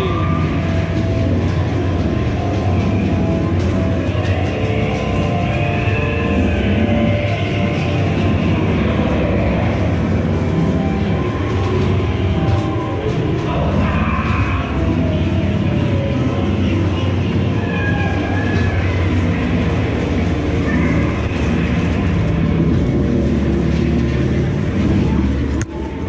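Ghost train car rumbling steadily along its track through the dark ride, with the ride's music and sound effects playing over it. The rumble eases briefly near the end as the car comes out.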